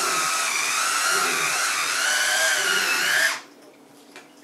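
Cordless electric wine opener's motor whining as it works the corkscrew into and out of a wine bottle's cork, its pitch wavering and climbing slightly before it cuts off suddenly a little over three seconds in.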